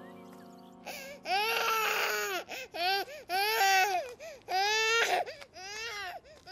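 A baby crying in a run of repeated wails, starting about a second in, as a held musical chord fades away.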